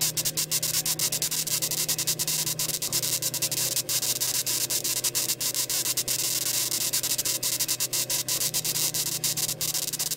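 Steady hissing static dotted with frequent crackling clicks over a constant low hum.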